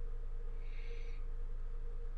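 Steady low background hum, with a faint brief hiss about halfway through.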